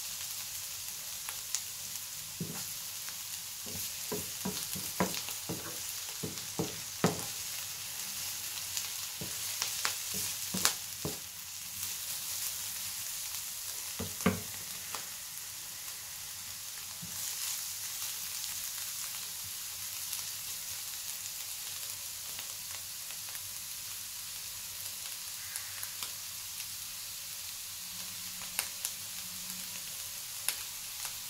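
Grated beetroot and cherry tomatoes sizzling steadily in a hot frying pan as they are sautéed for beetroot tibs. Through the first half a wooden spoon stirs, knocking and tapping sharply against the pan many times; after that the sizzling goes on alone, with a few taps near the end.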